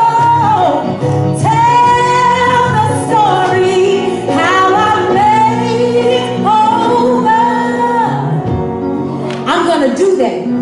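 A woman singing a gospel song solo into a microphone, in long held notes that slide up and down between pitches, phrase after phrase.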